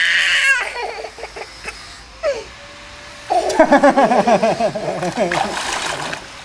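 A little girl crying in wavering sobs for a couple of seconds, starting about halfway in, with water splashing around her near the end.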